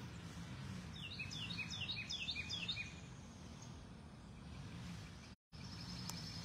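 A songbird calls a quick run of about eight falling whistled notes, roughly four a second, over a steady low background hum. The sound cuts out for a moment about five seconds in.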